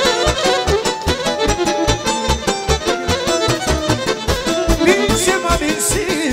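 Live folk band music led by electric violins playing a melody over a steady bass beat, with accordion.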